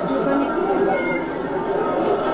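Crowd chatter: many voices talking over one another, with a short high-pitched call about a second in.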